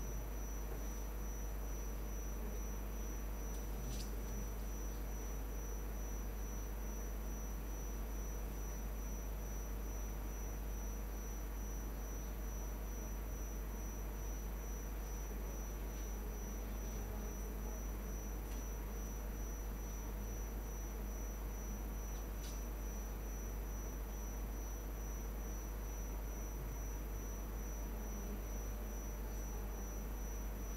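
Steady room tone in a quiet lecture room: a low hum with a thin, steady high-pitched whine over it, and a few faint, isolated clicks spread through.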